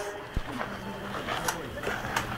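Faint murmur of voices, with two sharp knocks, one soon after the start and one about a second later.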